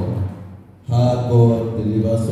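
A man's voice over a microphone in a rhythmic, chant-like delivery, typical of prayer. It fades briefly in the first second and comes back strongly just before halfway.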